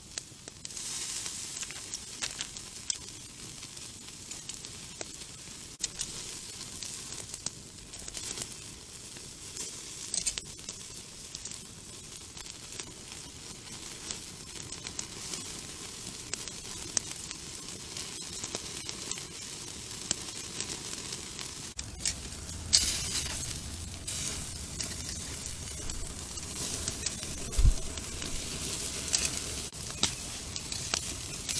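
Beef short ribs sizzling as they sear on a wire grill grate over a wood campfire, a steady hiss with scattered pops and crackles. The sizzle grows louder about two-thirds of the way through.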